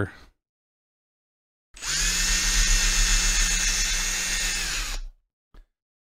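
Ryobi cordless drill boring out a bigger hole in a silicone ear. It starts about two seconds in, runs steadily for about three seconds and winds down.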